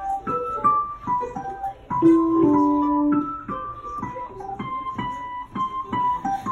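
Digital piano played by hand: a string of single notes, with a louder low chord held for about a second about two seconds in.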